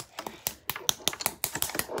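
Rapid, irregular clicking of long painted false fingernails tapping against each other as the hands flutter.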